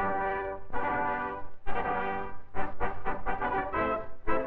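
Brass fanfare for a film company's opening title: a run of loud held chords with short breaks between them.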